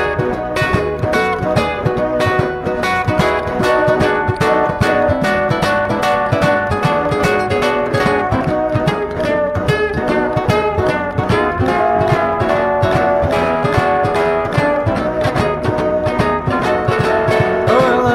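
Instrumental break of a blues-style band arrangement, with no singing and a steady beat throughout.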